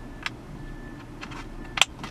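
Small plastic clicks as wiring connectors, including a large multi-pin plug, are handled and pushed into a car's climate control unit. The loudest is one sharp click near the end.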